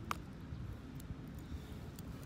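Low, steady wind rumble on the microphone. A sharp click comes just after the start and a fainter one about a second in.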